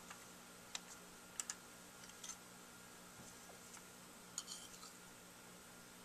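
Near silence: a faint steady room hum with a few light, scattered clicks.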